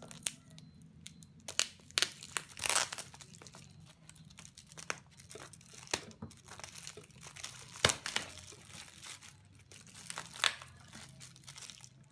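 Plastic packaging crinkling and tearing as a parcel's plastic bag and clear wrapping are cut and pulled open by hand: irregular rustling with sharp snaps, the sharpest about eight seconds in.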